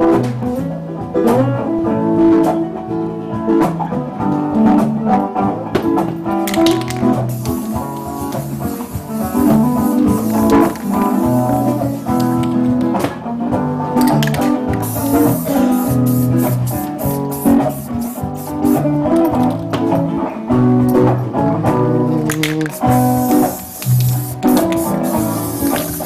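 Live band music with guitar playing, with no talk over it.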